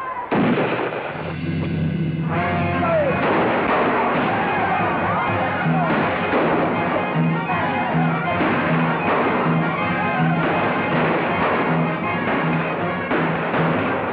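Dramatic film score driven by a steady low drumbeat, a little under two beats a second, over a crowd shouting and scattering.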